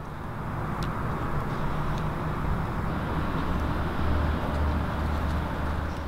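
Steady low background rumble with a soft hiss, swelling slightly in the second half, with a faint tick about a second in.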